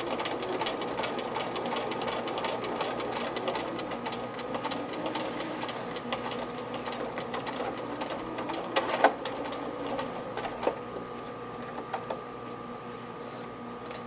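Bernina electric sewing machine stitching a seam through fabric with rapid, steady needle ticking and motor hum, stopping about eight or nine seconds in. A few sharp clicks follow.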